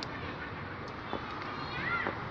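Outdoor ambience of distant voices, with a short rising-then-falling call near the end.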